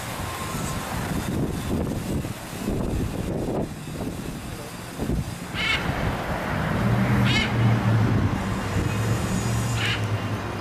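Wind rumbling on the microphone, with two short, high, wavy squawks from a blue-and-gold macaw about halfway through. In the second half a steady low engine hum joins in.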